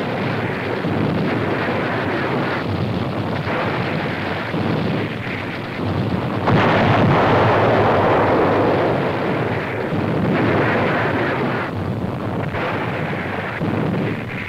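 Old newsreel sound of explosions and burning buildings: a continuous noisy rumble that swells and dips, loudest from about six and a half seconds in to about nine.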